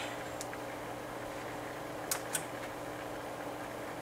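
Faint steady hum with two light clicks a little past two seconds in, as the knobs and switches on a bench DC power supply are worked.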